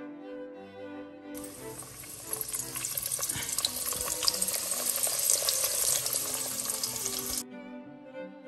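Dough pastries frying in hot oil in a steel pan: a loud sizzle with crackling pops that starts about a second and a half in and cuts off suddenly about a second before the end, over soft bowed-string background music.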